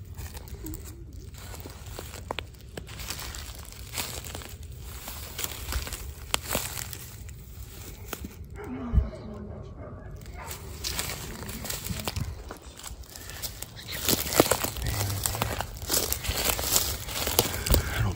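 Footsteps in boots crunching and rustling through dry fallen leaves and dead grass, in an irregular walking pace.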